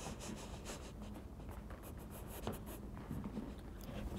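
Faint, breathy laughter from a man, with light scratchy rustling, over a low steady room hum.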